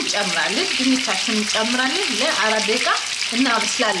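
Chicken pieces frying in oil in a nonstick pan: a steady sizzling hiss, with a woman's voice speaking over it for most of the time.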